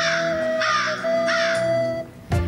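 Three crow caws about two-thirds of a second apart, a comedy sound effect laid over steady background music.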